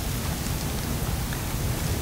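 Steady background hiss with a fluttering low rumble, and no distinct knife or handling sound.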